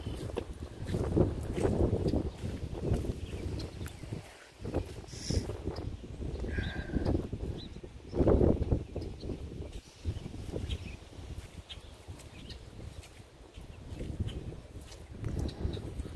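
Footsteps squelching and swishing through waterlogged grass, with wind rumbling on the microphone. A short faint call is heard about seven seconds in.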